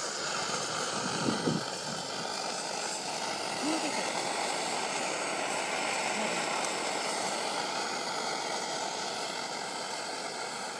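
Optimus 8R pressurised petrol stove's burner running steadily under a moka pot, an even rushing noise with no change in pitch.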